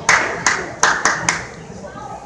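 Five sharp hand claps close to the microphone, in an uneven run over about a second and a half, with faint crowd chatter underneath.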